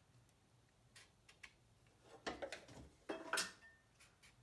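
Faint ticks and scrubbing of a paintbrush working in a watercolour palette's wells as paint is picked up, a few light taps first and louder brushing strokes in the second half.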